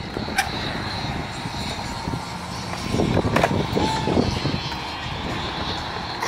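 Skateboard wheels rolling on concrete with a steady rumble, and sharp clacks of boards striking the concrete about half a second in and again around three and a half seconds.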